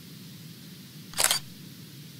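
Short camera-shutter-style sound effect about a second in, over a steady low hum, marking the logo ident at the end of a news clip.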